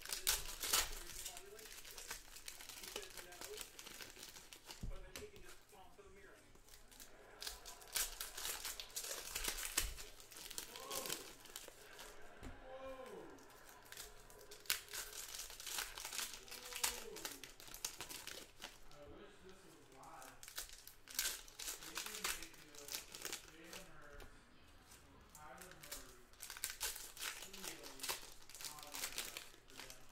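Plastic shrink-wrap crinkling and tearing in irregular bursts as a sealed box of trading cards is unwrapped and opened by hand.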